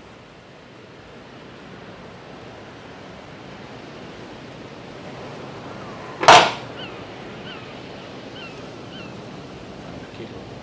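One sharp snip of bonsai scissors cutting a pine shoot about six seconds in, over a steady background hiss. A few faint short high chirps follow it.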